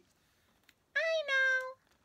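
A woman's high, squeaky character voice: one short two-part line that rises slightly and then falls in pitch, about a second in.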